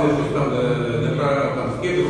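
Indistinct men's voices talking, with a steady droning quality and no clear words.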